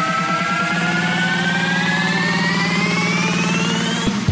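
Vinahouse build-up: a synth riser climbing smoothly and steadily in pitch over a fast pulsing synth line, with no kick drum.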